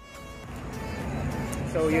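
Outdoor background noise, a steady low hum that slowly grows louder, then a man starts speaking near the end.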